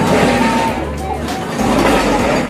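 Voices talking over background music, with a low rumble that drops out briefly partway through.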